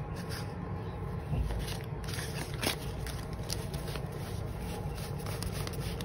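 Paper dollar bills rustling softly as a stack of banknotes is handled and spread out, with a few small crackles and clicks of paper.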